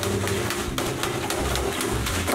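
Large kitchen knife striking and stabbing a plastic bag of ice cubes to break up the ice, a rapid run of sharp knocks and crunches over a low hum.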